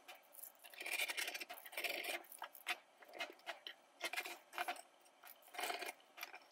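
Faint, irregular rustling and scraping of polyester screen mesh and stretch cord being pulled and handled against a wooden screen frame.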